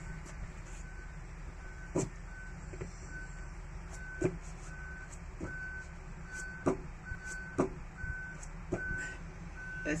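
A high electronic beep repeating evenly, a little faster than once a second, with a few short thuds of hands landing on a rubber mat during handstand shoulder taps.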